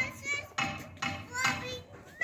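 High-pitched voices in short phrases with gliding pitch.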